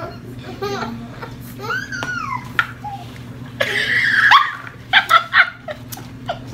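Laughter and wordless vocal reactions to a foul-tasting drink: a loud rasping vocal burst about four seconds in, then a quick run of short laughing bursts.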